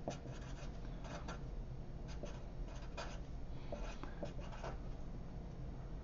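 Sharpie fine-point marker writing on paper: a run of short, irregular strokes as words are written out.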